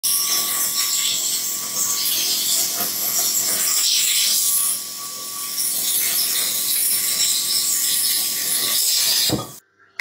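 Air plasma cutter cutting through steel plate: a loud, steady hiss of the arc and air jet. The hiss dips briefly about halfway through and cuts off just under a second before the end.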